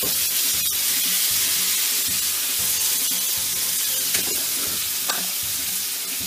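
Pork pieces with onion and bell pepper sizzling steadily in a frying pan, stirred with a utensil that clicks lightly against the pan a few times.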